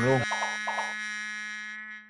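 An electronic buzzer-like synthesizer tone used as a comedy sound effect, held at one pitch and slowly fading before it cuts off suddenly at the end. A man's last spoken word comes just before it.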